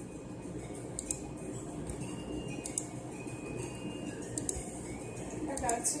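A few light, sharp clicks spread over a few seconds, against a steady low background noise with faint music.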